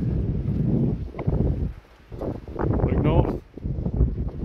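Wind buffeting a phone's microphone outdoors, dropping away briefly twice, with a short snatch of a man's voice about three seconds in.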